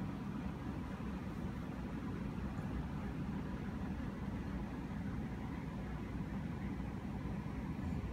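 A steady, even low rumble of background noise, with no distinct sounds standing out.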